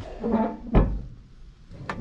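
A man's short sing-song vocal sound, followed by a single heavy thump, the loudest sound, less than a second in; a sharp click comes near the end.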